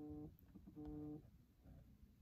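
A woman's soft hummed "mm" of hesitation, heard twice briefly: once right at the start and again about a second in. Otherwise near silence.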